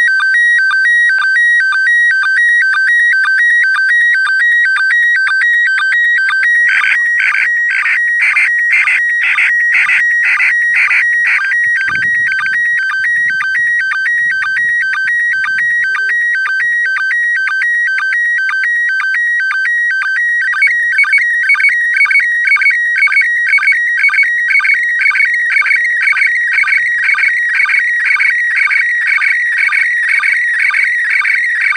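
Slow-scan television (SSTV) picture signal from the International Space Station's amateur radio transmitter, heard through a receiver: a continuous warbling of high tones with a steady beat of about two pulses a second, each beat one scan line of the image being sent.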